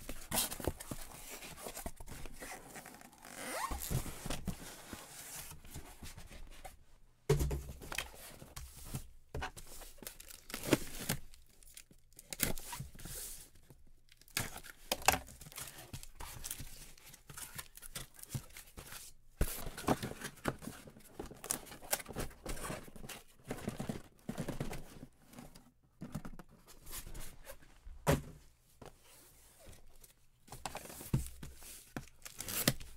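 Cardboard shipping case being opened and unpacked by hand: packing tape tearing, cardboard scraping and rustling, and knocks and thuds as the inner cases and boxes are pulled out and set down, the heaviest thud about seven seconds in.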